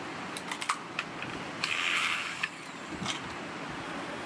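Light clicks and taps of plastic fan parts and a hand tool being handled while a driver unit is fitted into a ceiling-fan motor housing, with a short rustle about halfway through, over a steady background noise.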